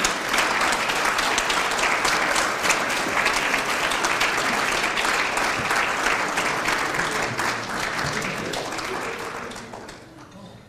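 Audience applauding in a hall after an inductee is announced, the clapping fading away near the end.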